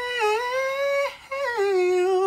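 A female singer's voice, unaccompanied, holding a high note for about a second, then after a short break a second long note that steps down in pitch.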